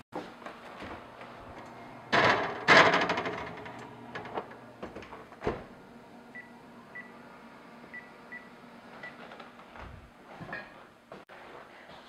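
Wall oven door opened and shut with a clatter as a metal loaf pan goes in, then a few small knocks. After that come five short electronic beeps from the oven's keypad as it is set.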